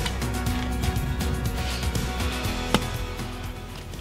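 Background music with held tones and a run of short percussive strokes, fading out near the end.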